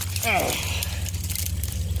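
A short, wordless vocal sound with falling pitch, like an effort grunt, comes about a quarter second in. Brush and branches then scrape and crackle against a person and the handheld phone as he climbs through fallen trees, over a steady low handling rumble.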